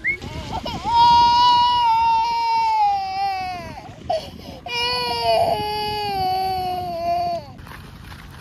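A toddler crying: two long drawn-out wails, each sagging in pitch as it ends, with a short sob between them.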